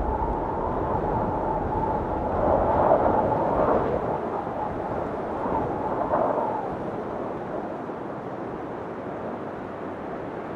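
An edited intro soundtrack: a wind-like wash of noise with a faint held tone over it, slowly fading.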